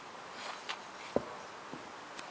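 A bear cub pushing and nosing a plastic tub on dirt: a few scattered knocks and scrapes, the sharpest a little past a second in.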